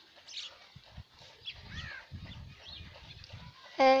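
Outdoor farmyard sound: small birds chirping now and then, with low rumbling bursts through the second half.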